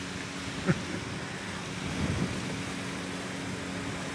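Steady outdoor background noise with a faint low hum, a brief short sound about two-thirds of a second in, and a low rumble around two seconds in.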